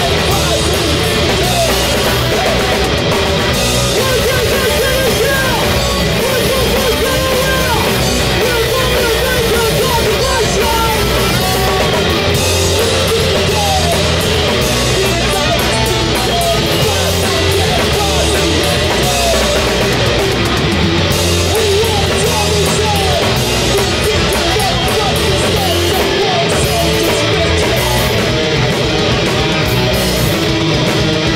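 Punk rock band playing live and loud: electric guitars and a drum kit with crashing cymbals, in one dense, unbroken wall of sound.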